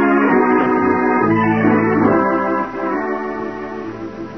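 Organ music bridge between radio-drama scenes: held chords that change a few times, dropping in level about two and a half seconds in.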